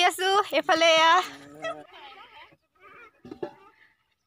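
A woman talking for about the first two seconds, then only faint scattered sounds and a short near-silence near the end.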